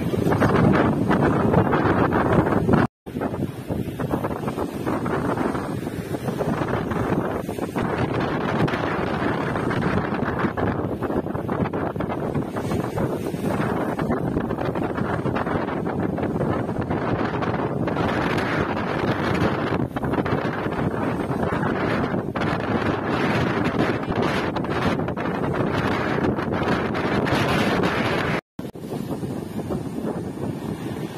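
Strong wind buffeting the microphone over rough sea, with waves breaking against a seawall and surf washing onto a rocky shore. The sound cuts out suddenly for a moment twice, about three seconds in and near the end.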